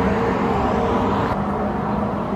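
A steady rushing noise with a low hum underneath, holding even throughout.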